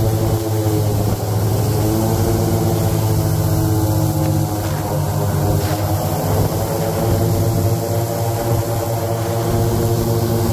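Airboat engine and air propeller running at speed, a loud, steady drone with a deep hum.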